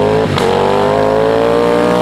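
Ducati Panigale V4 SP2's 1,103 cc Desmosedici Stradale V4 engine accelerating, its note climbing steadily in pitch, with a brief break about a third of a second in.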